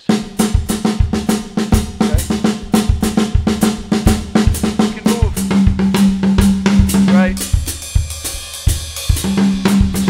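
Drum kit playing a two-three son clave with the feet under a cascara pattern played with the left hand on the snare drum, as a steady, even groove: an independence exercise.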